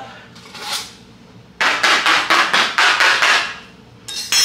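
A brief rustle, then a rapid run of sharp knocks or taps on something hard, about five a second for roughly two seconds.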